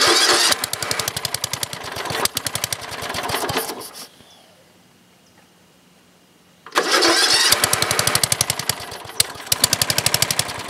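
Old single-cylinder Briggs and Stratton lawn tractor engine, with a one-piece Flo-Jet carburetor, started with a hand cupped over the carburetor intake as a choke. It fires and runs about four seconds, then dies away, then starts again about seven seconds in and keeps running.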